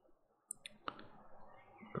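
A few faint, sharp clicks about halfway in, over quiet room tone.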